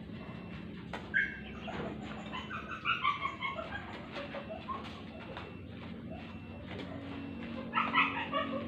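Badminton rackets hitting a shuttlecock: a few sharp clicks spaced through a rally, the clearest about a second in. Short bird calls sound behind them.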